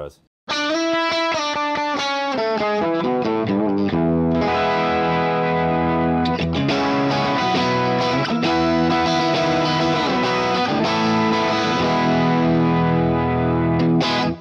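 Electric guitar played through a Fractal Audio FM9 with its pitch block set to a 12-string emulation, giving a doubled, 12-string-like sound. Single picked notes for the first few seconds, then full strummed chords ringing on.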